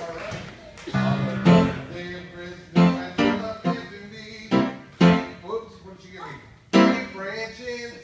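A musical instrument playing about eight loud, separate chords or notes, each with a sharp start that fades away, unevenly spaced, with voices in between.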